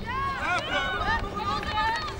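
Players' high-pitched voices calling out in short shouts across the field hockey pitch, over a steady low background noise.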